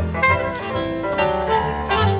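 Live jazz instrumental: a saxophone playing a melodic line over a double bass and a Nord Electro keyboard, with no voice.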